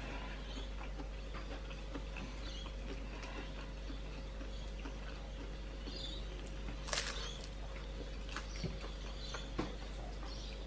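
Quiet room with a steady low hum, and a man chewing a spring roll: faint mouth and eating noises with scattered small clicks, the sharpest about seven seconds in.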